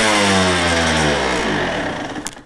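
2001 Honda CR125R two-stroke engine, revs falling steadily after a blip of the throttle and fading. It is not fully warmed up and is running rich.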